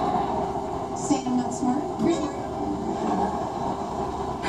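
Steady rumbling hum of a running vehicle, with faint voices murmuring briefly about a second in and again just past two seconds.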